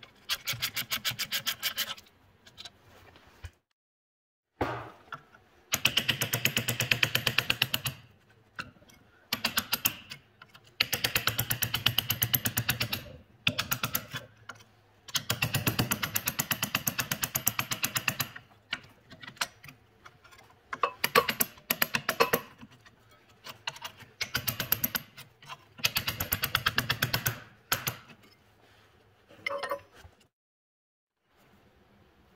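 Hand socket ratchet clicking rapidly in repeated runs of one to three seconds, with short pauses between, as bolts are turned out.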